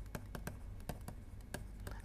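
Stylus tapping and scratching on a pen tablet while handwriting, a faint, irregular run of about a dozen light clicks over a low steady hum.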